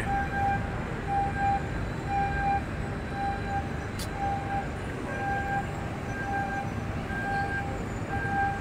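An electronic warning beeper sounding a short steady beep about once a second, over a steady background rush of harbour noise.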